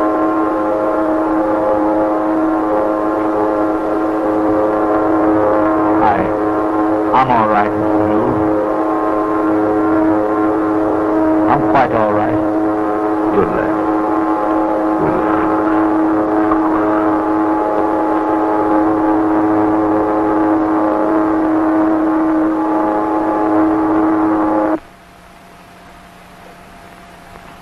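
A ship's siren sounds one loud, steady, multi-pitched blast throughout and cuts off abruptly about a second before the end.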